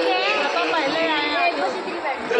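Crowd chatter: many people talking at once, their voices overlapping steadily.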